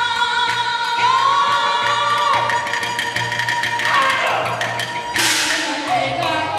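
Live Chinese opera accompaniment for a fight scene: a held, sliding melodic line over rapid percussion strikes, with a loud cymbal crash about five seconds in.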